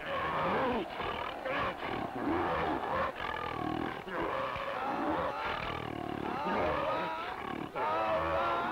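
Cartoon lion roaring and growling in a string of calls that bend up and down in pitch, one after another.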